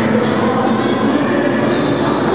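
Ballroom dance music playing in a large hall, nearly buried under a steady roar of crowd noise.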